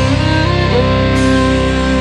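Instrumental break of a folk-rock band recording: guitar chords and other held notes ring on steadily, with no drum beats until just after.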